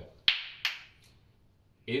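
Two sauna heater stones knocked together twice: two sharp knocks about a third of a second apart, each dying away quickly. This is the knock test of the stones' condition. They give no hollow sound and don't break, so they are judged still good to use.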